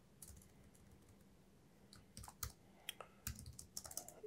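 Faint keystrokes on a computer keyboard: a couple of taps near the start, then a run of separate taps over the last two seconds as a name is typed.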